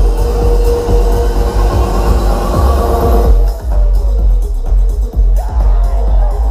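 Loud electronic dance music played through a festival sound system, with heavy bass and a steady kick-drum beat. A held synth note drops out about three seconds in, leaving the bass and beat.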